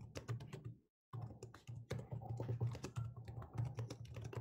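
Faint typing on a computer keyboard: a quick run of keystrokes with a short pause about a second in.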